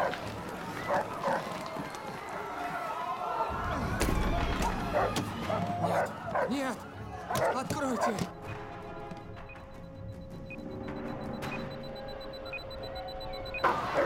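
A dog barking amid shouting and commotion, with a thump about four seconds in. In the second half the commotion drops away under a held musical note.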